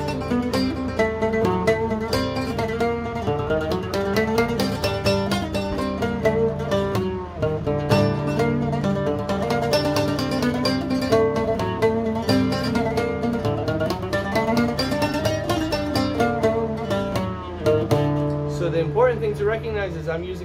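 Solo oud played in stiff, hard-plucked Arabic (Egyptian) style: a quick, dense run of plucked notes from a composition, with a low note ringing steadily underneath.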